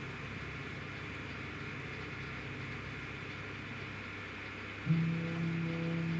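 CNC router stepper motors humming as the machine runs an automatic tool-zero (Z touch-off) routine. About five seconds in, a louder steady motor whine starts and cuts off about two seconds later, as the axis moves at constant speed.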